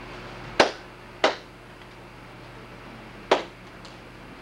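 Three sharp hand claps or slaps, two close together and a third about two seconds later, each with a short echo from the room.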